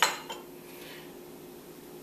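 A small stainless-steel ramekin set down on the counter: a single sharp clink at the very start that rings briefly, then only a faint steady hum.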